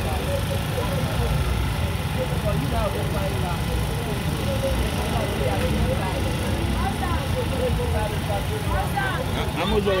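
Busy street ambience: a steady low rumble with indistinct voices of people chatting over it.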